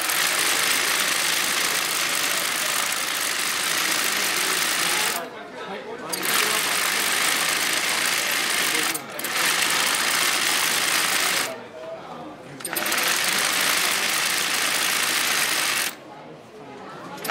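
Zigzag (yokofuri) embroidery sewing machine running fast as the needle stitches into hooped cloth. It runs in four long bursts, stopping briefly three times as the hoop is repositioned.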